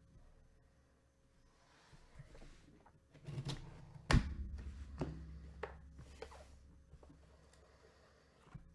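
A box cutter slitting through the tape seam of a cardboard box, with handling clicks and scrapes. The loudest is a single hard knock about four seconds in, followed by a few lighter clicks as the box is opened.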